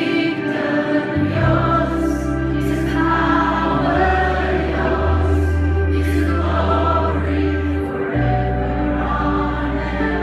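Live contemporary worship music: a band playing sustained chords over deep held bass notes that move to a new note every few seconds, with many voices singing together.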